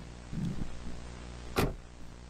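Steady low hum with a faint hiss underneath. A brief soft murmur comes about half a second in, and a man's voice says "Sir" near the end.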